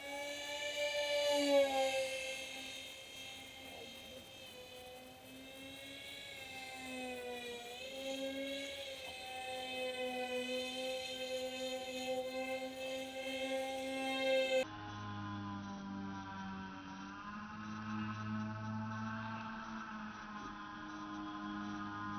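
Twin motors and APC 6x4 propellers of an RC foam Su-37 model whining steadily in flight, the pitch bending slightly as the throttle changes. About two-thirds of the way through, the sound drops suddenly to a much lower, duller drone, the props heard slowed down in slow-motion playback.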